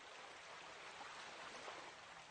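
Faint, steady rush of flowing water, the sound of water being diverted through a pipe as a butterfly valve closes.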